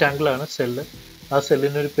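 A man's voice speaking in short, quick phrases: narration that the speech recogniser did not transcribe.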